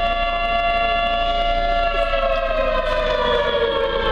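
Air-raid siren sound effect played for a stage skit, holding one pitch and then slowly sliding down in pitch from about halfway through, as a siren winds down.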